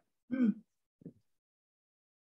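A person's short 'hmm' with a falling pitch about a third of a second in, then a faint brief vocal sound about a second in.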